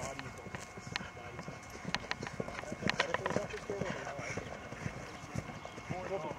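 Hoofbeats of a Thoroughbred–Welsh cob mare cantering on grass over a jump course, an uneven run of dull hoof strikes that thickens into a cluster of heavier strikes about three seconds in. Background voices are heard beneath them.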